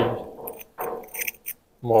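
A man's short exclamations, with a few faint clicks of porcelain shards and a glazed jug being handled by gloved fingers in the pause between them.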